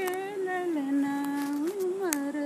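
An elderly woman singing a song unaccompanied, in slow, long-held notes. The melody steps down to a lower note held for about a second, then rises back up near the end.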